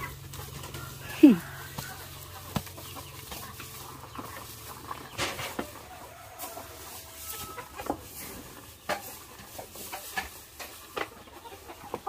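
A cow eating dry rice straw: rustling straw and crunching, clicking chews throughout. About a second in comes a short call falling in pitch, the loudest sound here, and chickens cluck now and then in the background.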